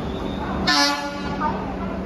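Train horn sounding one short blast, about half a second long, a little over half a second in, heard over the low rumble of a train moving along the platform.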